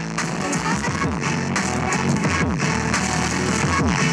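Electronic music played through cheap Trolls-themed kids' headphones held against a microphone.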